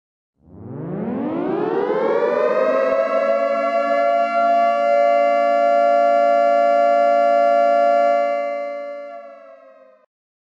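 Civil-defence air-raid siren winding up, its pitch rising over about two seconds, then holding a steady wail before fading away near the end.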